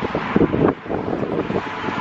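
Wind buffeting a handheld camera's microphone in irregular gusts of rumble.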